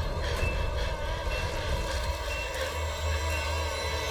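Horror trailer sound design: a loud, dense rumble with wavering tones layered over it and a short high ping about once a second.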